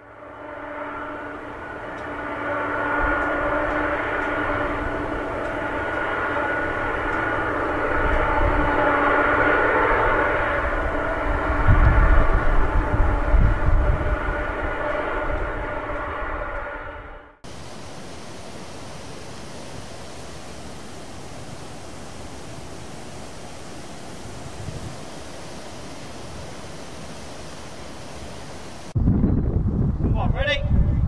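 Large twin-engine jet airliner's turbofan engines whining, a set of steady tones over a rush of noise, growing louder with a deep rumble about twelve seconds in and then cutting off suddenly. A steady, even hiss follows for about eleven seconds.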